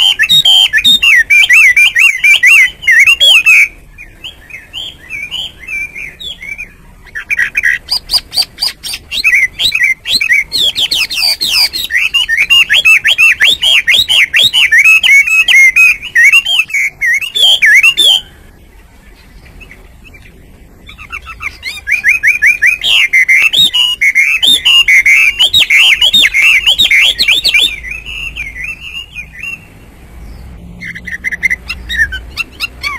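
Chinese hwamei singing: a loud, fast, varied song of warbled and whistled notes, in three long bouts with softer notes in the gaps between them.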